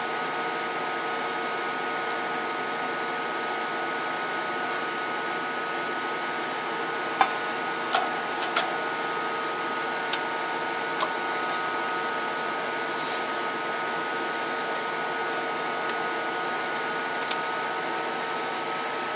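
Steady whirring hum from running bench electronics, with a few faint held tones through it. Several light clicks come between about 7 and 11 seconds in, and once more near the end.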